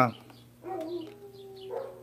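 A faint animal call in the background, drawn out on a steady pitch for about a second, heard in a pause in the talk.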